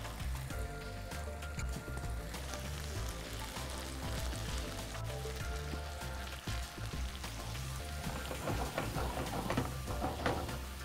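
Spiced onion gravy sizzling in a non-stick kadai while it is stirred with a silicone spatula, with water poured in from a jug about halfway through. Soft background music runs underneath.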